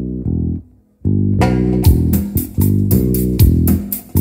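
Live band music: an electric bass line plays on its own, stops briefly just before a second in, then the full band comes back in with drums hitting in a steady beat.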